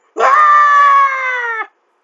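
A man's single long, loud yell of mock shock, held for about a second and a half with its pitch slowly falling, then cut off sharply.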